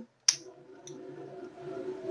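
A single sharp click at a gas stove about a third of a second in, then a faint steady hum with a couple of small ticks.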